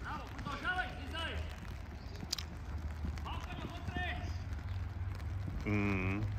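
Shouts and calls from players and onlookers at a youth football match, coming in short bursts over a steady low hum, with a single sharp knock about two seconds in. A louder voice close by starts near the end.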